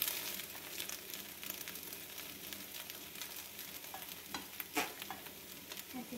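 Slices of egg-soaked cake French toast frying in a stainless steel skillet: a steady sizzle, with a few short knocks of a spatula against the pan in the second half.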